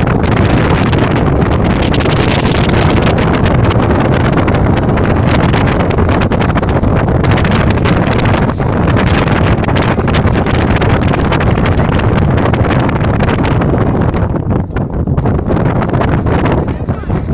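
Wind buffeting the microphone, loud and steady, with the rumble of a vehicle driving on a dirt road; it eases slightly near the end.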